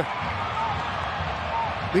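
Steady stadium crowd noise under a soccer broadcast: an even wash of many voices with no single sound standing out.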